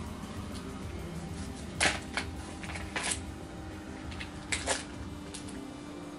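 Foil and plastic trading-card pack wrapping handled in the hands, crinkling in about half a dozen short, sharp crackles, over a low steady hum.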